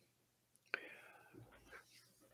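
Near silence: a faint click about three-quarters of a second in, followed by a soft breath from a man pausing mid-sentence.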